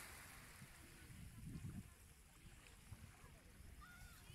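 Near silence: a faint low rumble of wind on the microphone, swelling slightly about a second and a half in.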